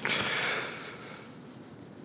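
Soft rustle of a knit cap being pulled down over the head close to the microphone, fading out about a second in.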